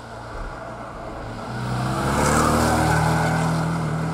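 Porsche 718 Boxster's turbocharged flat-four engine pulling the car through a bend. The engine note rises and grows louder to a peak about two and a half seconds in, then eases slightly as the car pulls away.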